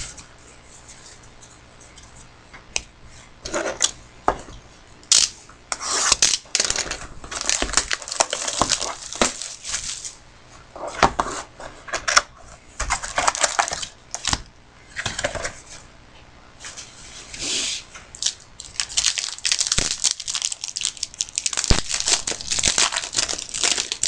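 A trading-card pack wrapper being torn open and crinkled by hand, in irregular bursts of rustling and tearing that grow denser near the end.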